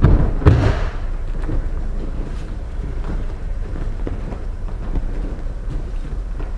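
A person thrown in an aikido kokyunage landing in a breakfall on a wrestling mat: a heavy thud with a slap about half a second in. After it, a low steady rumble of hall noise with a few faint soft knocks of footsteps on the mat.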